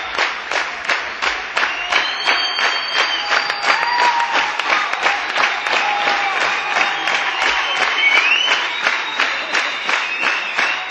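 Concert audience clapping in unison, about three claps a second, with whistles sliding up and down above the clapping: the crowd calling the band back for an encore.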